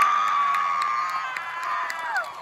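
Crowd cheering, with one long, high whoop held steady that drops off near the end.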